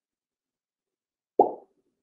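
Silence, broken about one and a half seconds in by a single short, dull plop lasting about a quarter of a second.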